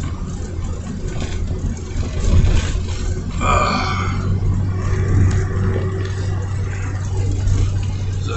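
A vehicle's engine running steadily, a constant low hum heard from inside the cab. A brief pitched sound comes about three and a half seconds in.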